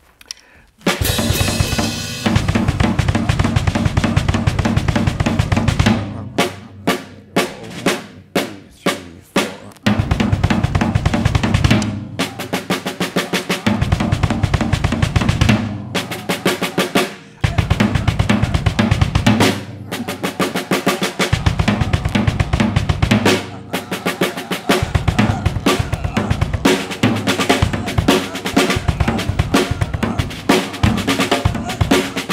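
Acoustic drum kit played with a double bass drum pedal: fast, dense patterns of snare and bass-drum strokes, starting about a second in. Between about 6 and 10 s the playing breaks into separate accented hits with short gaps, then continues in a steady, busy stream.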